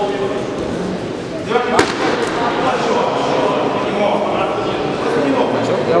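Voices of spectators and coaches calling out in a sports hall during a sanda bout, with one sharp thump about two seconds in.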